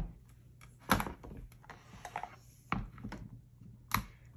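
Rubber stamp being re-inked and pressed again in a Stamparatus stamp-positioning tool: an ink pad dabbed against the stamp and the tool's hinged plate brought down onto a silicone mat. This gives a few separate plastic knocks and thunks, about a second in, near three seconds in and again just before the end, with small clicks between them.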